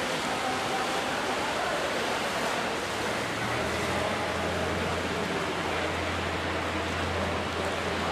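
Steady rushing harbour ambience at a ship departure, a wash of wind and faint distant voices. A low steady hum sets in about three and a half seconds in and holds.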